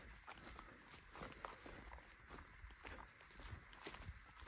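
Faint footsteps on a dry grassy hillside path: irregular soft crunches a few times a second.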